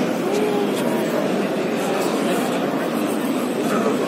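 Dense crowd of many people talking at once, a steady indistinct hubbub of overlapping voices with no single voice standing out.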